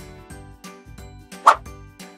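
Children's background music with a steady beat, and a single short plop about one and a half seconds in as the apple bobs back up in the tank of water.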